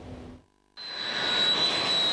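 F-16 fighter jets taking off, their jet engines running at full power with a steady high-pitched whine over the roar. The sound starts abruptly just under a second in, after a brief silence.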